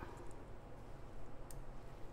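Quiet room with a steady low hum and a few faint, short clicks, the sharpest about three-quarters of the way through.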